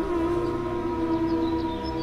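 Background film score of sustained, held tones, a soft drone-like chord that slowly fades a little.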